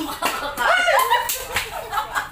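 Women laughing and shrieking, with a few sharp smacks as a plastic bottle is flipped and lands on a tiled floor. The loudest part is the high-pitched shrieking laughter in the middle.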